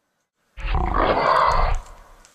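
A loud, rough roar lasting just over a second, starting about half a second in and dying away shortly before the end.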